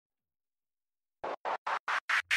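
Song intro effect: after about a second of silence, four short, evenly spaced noise hits, about four a second, in a DJ scratch-like build-up.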